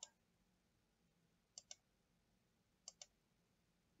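Computer mouse clicks in a quiet room: one click at the very start, then two quick double clicks, about a second and a half in and again near three seconds.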